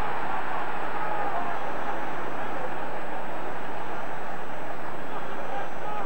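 Football stadium crowd noise: many voices blending into a steady din with no single voice standing out.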